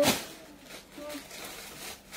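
A woman's voice cuts off with a short sharp breath or sibilant right at the start. Then comes low background sound with faint voices, until talking resumes.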